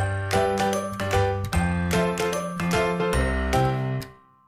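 Background music: a bright, chiming instrumental tune of quick struck notes over a steady bass line.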